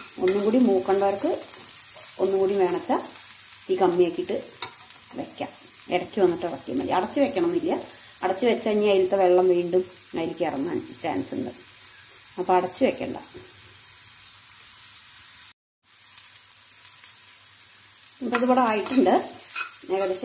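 Metal spatula stirring and scraping chopped bitter gourd around a metal kadai in repeated strokes, over a soft sizzle of frying. The stirring pauses for a few seconds past the middle, leaving only the faint sizzle, then starts again near the end.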